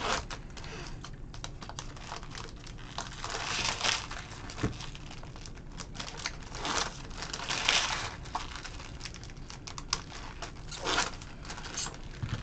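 Trading-card pack wrappers crinkling and tearing as packs are ripped open by hand. It is a running stream of small clicks and rustles, with a few louder crinkling swells.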